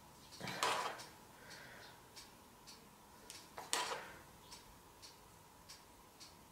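Steady clock-like ticking, about two ticks a second, with two louder clatters, one about half a second in and one about four seconds in.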